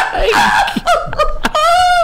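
People laughing and shrieking in loud short bursts, ending in a high, drawn-out squeal about one and a half seconds in.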